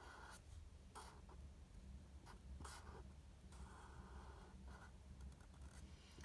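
Faint scratching of a black felt-tip marker being drawn across paper: several short strokes and one longer one about three and a half seconds in.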